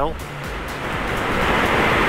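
Wind rushing over a helmet-mounted camera on a moving motorcycle, a steady roar that builds toward the end, with the bike's low engine hum underneath in blustery conditions.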